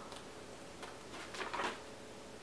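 Faint handling of books: a few light knocks and rustles, loudest in the second half, as a picture book is set aside and another book is picked up.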